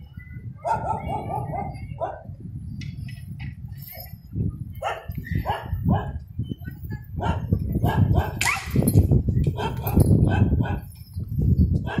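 Street dogs barking, a drawn-out call near the start, then a run of short barks through the second half, over a steady low rumble.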